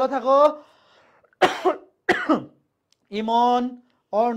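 A person coughing twice, about a second and a half and two seconds in, between short voiced sounds.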